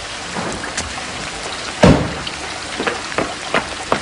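Steady heavy rain falling, with scattered sharp drips and splashes over it, the loudest about two seconds in.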